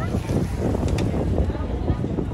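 Wind buffeting the microphone, an uneven low rumble that rises and falls, with faint voices of people nearby in the background.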